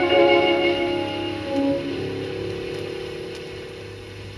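Closing bars of a 1930 French chanson recording played from a vinyl LP, instrumental only: held notes fade, a final chord comes in about halfway through and dies away, over a faint steady low hum.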